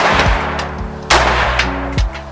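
Two loud blasts of gunfire from a tan FN SCAR rifle about a second apart, each trailing off in a short echo, over background music.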